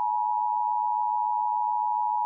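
Colour-bar test tone: a single steady beep held at one unchanging pitch.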